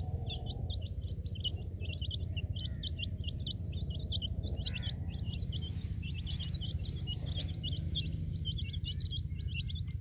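Baby chicks peeping: a rapid run of short, high peeps, several a second, over a steady low rumble.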